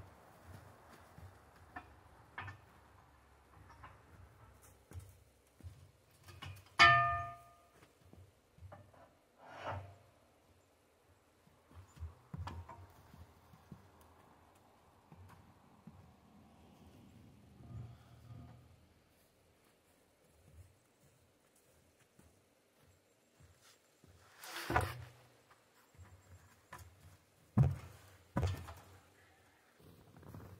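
Metal struck against metal on the sawmill's frame: one loud clang about seven seconds in that rings briefly, then scattered knocks and thuds.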